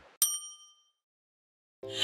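A single bright, bell-like ding that rings briefly and fades, a sound effect struck with the title card.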